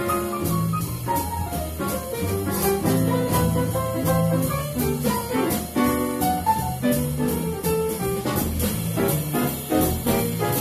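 Live swing jazz from a piano, double bass and drums trio: a Yamaha grand piano plays running lines over plucked double bass notes and steady cymbal strokes.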